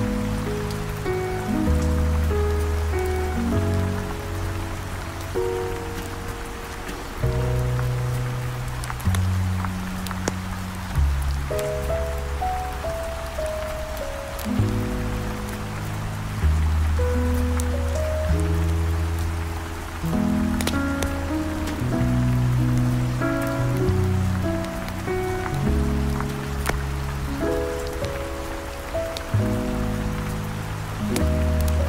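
Slow smooth jazz with held chords and a walking bass line, over steady heavy rain, with scattered small crackles that fit a wood fire.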